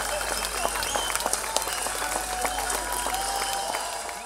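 An audience applauding, many hands clapping, with voices in the crowd, beginning to fade out near the end.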